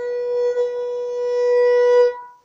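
Violin holding one long bowed note that swells slightly louder near the end.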